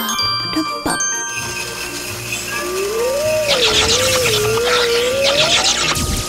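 Cartoon sound effect of a magic milkshake machine starting up: a click, then a low rumble with a building fizz, and a wobbling tone that rises over a sparkly crackle before everything cuts off suddenly at the end.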